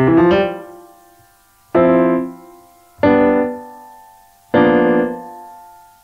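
Roland LX706 digital piano's grand piano sound: four chords struck about every second and a half, each ringing and fading away. The upper keys are held down silently so their strings resonate in sympathy, the instrument's modelled string resonance.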